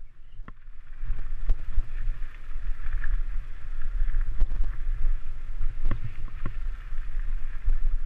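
Mountain bike descending a rocky dirt trail: a steady rumble of wind on the microphone and tyre noise, with scattered knocks and rattles as the bike goes over rocks. It gets louder about a second in.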